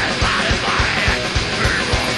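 Live extreme metal band in full flow: dense distorted guitars and bass, a fast steady kick drum at about five beats a second, and yelled vocals.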